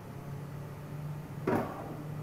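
Steady low hum with a single brief knock about one and a half seconds in.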